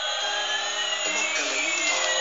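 Battery-operated light-up toy airplane playing its electronic jet-engine sound: a steady hiss crossed by whines that slowly rise and fall in pitch.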